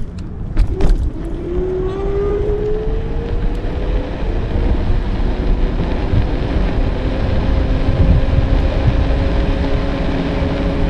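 Wind and road rumble on a handlebar-mounted action camera during an e-bike ride, with a thin electric-motor whine that rises in pitch over the first few seconds as the bike speeds up, then holds steady. A few sharp knocks come just under a second in.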